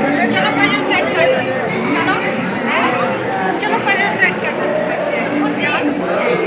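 Crowd chatter: many voices talking at once, filling a large indoor hall.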